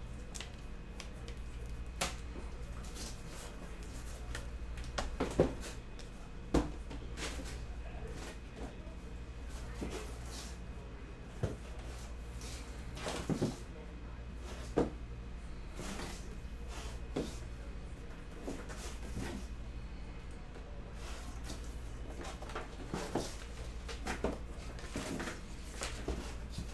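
Stack of trading cards being handled on a table: irregular light taps and knocks as the cards are squared up, sorted and set down, over a steady low hum.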